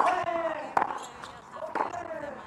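Tennis rally: three racket strikes on the ball about a second apart, the players hitting alternately from the baseline, each strike followed by a short falling vocal grunt.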